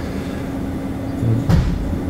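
Steady low mechanical background hum with one constant tone, and a short low thump about one and a half seconds in.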